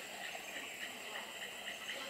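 Rainforest insects calling: a steady, high-pitched chorus that pulses rapidly, about eight to ten times a second.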